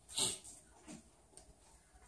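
A person's short, noisy breath near the mic, lasting about a fifth of a second near the start, followed by near quiet with a couple of faint small noises.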